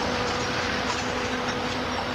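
Steady rumble and road noise of a moving vehicle, with a faint steady hum over it.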